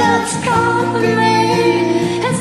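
Karaoke duet: voices singing over a pop backing track.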